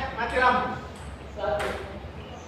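A person's voice in two short calls, one near the start and one about halfway through, with no ball being struck.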